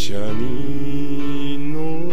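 Music: a female singer holds one long sung note that slides up at its start and rises again near the end, over a sustained accompaniment.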